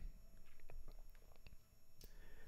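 Faint, scattered clicks of a computer mouse, several in quick succession through the middle, over quiet room tone.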